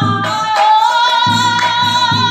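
A woman lead singer holding one long, wavering high note in Assamese Nagara Naam devotional singing, over a rhythmic accompaniment of drum strokes and large cymbals.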